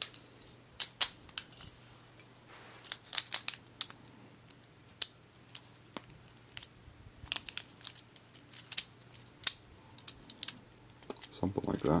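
Plastic and metal Beyblade parts clicking as the layer, disc and driver are pressed and twisted together by hand: scattered sharp clicks, some in quick little runs, with a brief rustle of handling.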